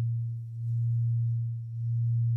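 A low, steady electronic tone, like a pure sine hum, playing as a background drone. Its loudness dips and swells twice.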